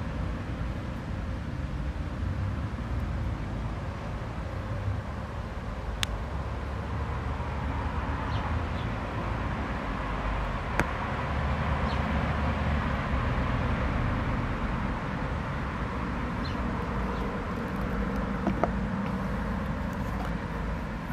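Steady outdoor background noise with a low rumble, swelling slightly around the middle, and two faint sharp clicks about six and eleven seconds in.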